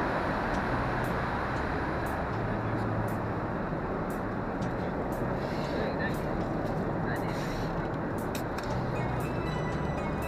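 Steady cabin noise of a Boeing 747-400 in flight: a dense, even rush of air and engine noise, with passengers' voices mixed in.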